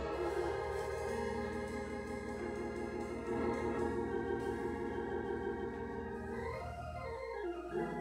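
Console organ playing sustained chords, with a sweep down in pitch and back up near the end.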